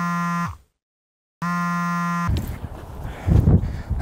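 A flat, low-pitched buzzer tone held steady, sounding twice for about a second each, with a moment of dead silence between. After the second buzz comes a stretch of noise with a few low thumps.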